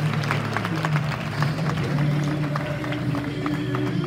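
Audience applause, scattered hand claps, over background music with sustained low notes.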